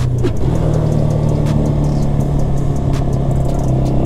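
Italika RT200 200 cc motorcycle engine running steadily under way, heard from the rider's seat.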